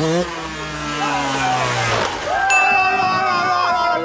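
A man's long, excited shout, falling slowly in pitch for about two seconds, over the low running of a distant dirt bike's engine. About two and a half seconds in, an edited-in music sting with steady high tones cuts in.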